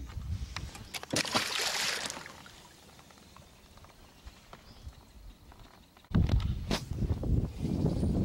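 A channel catfish released back into the water: a short splash about a second in, then a few quiet seconds. About six seconds in, a low wind rumble on the microphone starts abruptly.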